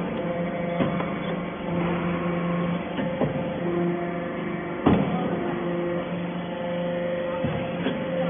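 Casting-chip briquetting press and its inclined chip conveyor running with a steady hum, broken by a few sharp knocks, the loudest about five seconds in.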